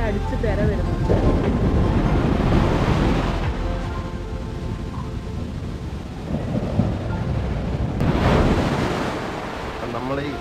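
Sea surf washing in around the wooden stilts of beach shacks, with two big surges, one about a second in and one near the end, and wind rumbling on the microphone.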